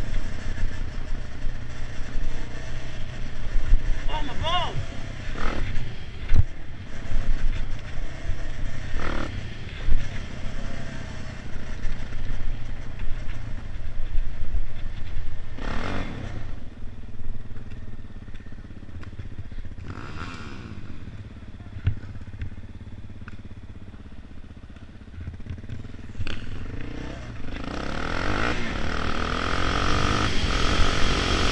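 Off-road motorcycle engine running on a trail ride, its pitch rising and falling with the throttle. It drops to a quieter stretch past the middle, then climbs again near the end.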